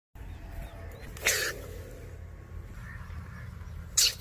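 Cobra hissing in two short, sharp bursts, one about a second in and a louder one at the very end as the mongoose lunges at it.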